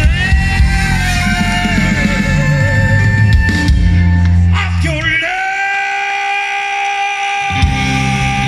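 Live band playing rock-and-soul with a shouted lead vocal over a heavy drum-and-bass low end. About five seconds in, the rhythm section drops out, leaving one held note for a couple of seconds before the full band crashes back in near the end.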